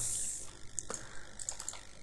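A few scattered, faint clicks of a computer mouse and keyboard, the sharpest just under a second in and a small cluster about a second and a half in, after a brief breathy hiss at the start.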